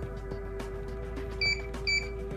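Two short, high electronic beeps from an Emtek keypad lever lock, about half a second apart in the second half, over steady background music. They are the keypad's key-press tones in programming mode, where pressing 5 deletes all user codes.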